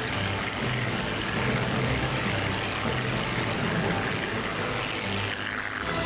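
Airbus A400M Atlas's four TP400 turboprops and eight-bladed propellers droning steadily in a banked pass, mixed with background music. The sound changes abruptly just before the end.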